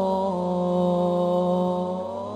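A man singing an Islamic sholawat song. His voice glides down a little and then holds one long, steady note over a sustained accompaniment.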